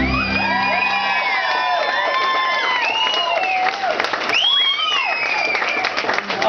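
The last of the live band's music cuts off in the first half second. A crowd then cheers, with many long rising-and-falling whoops over applause.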